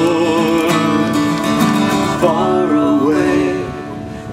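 Acoustic guitar playing an instrumental break in a folk song, with a held, wavering melody line above it that shifts pitch about halfway through.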